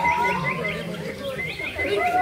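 A bird calling in quick runs of short, rising chirps, about seven a second, twice, over low voices.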